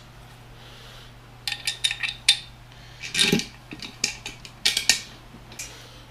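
Metal parts of a flat-pack laptop desk clinking and knocking together as its frame tubes and bolts are fitted by hand. There are clusters of sharp clicks about a second and a half in, around three seconds, and again near five seconds.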